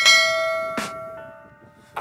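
Notification-bell ding from a subscribe-button animation, struck with a click and ringing out as it fades over about a second and a half. A short mouse click falls partway through.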